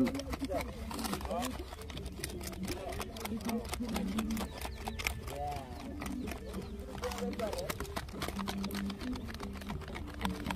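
Faint, rapid crackling of a paper scrap burning as kindling under lump charcoal, with low voices talking in the background.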